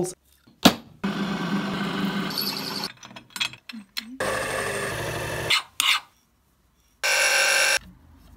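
A milling machine cutting aluminium in three short runs, each a noisy cutting sound with a steady whine that starts and stops abruptly. A sharp click comes just before the first run, and the last run is the shortest and has the highest whine.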